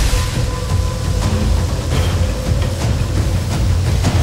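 Sound effects for a magical energy-beam clash: a loud, continuous low rumble with a steady hum held above it.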